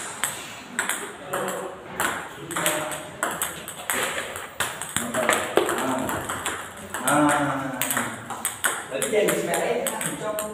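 Table tennis rally: a celluloid-type ping-pong ball struck back and forth by rubber-faced paddles and bouncing on a Yinhe table, a quick run of sharp clicks and knocks. People's voices come in about seven seconds in and again near the end.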